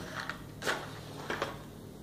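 A match struck on a matchbox: one short rasping scratch a little over half a second in, with a few fainter scrapes and clicks from handling the box.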